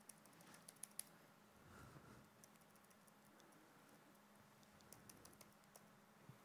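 Near silence: room tone with a faint steady hum and faint laptop keyboard or trackpad clicks, a cluster in the first second and another about five seconds in.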